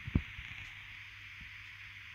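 Two soft, short knocks right at the start, then faint steady room hiss and hum.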